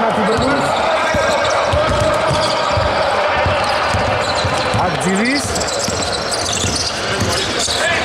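Basketball dribbled on a hardwood court in a large hall: a run of low bounces as the ball is brought up the floor.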